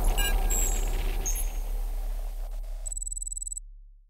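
Logo animation sound effects: glitchy clicks and ticks over a deep bass rumble that slowly fades out, with a brief high ringing tone about three seconds in before it all stops.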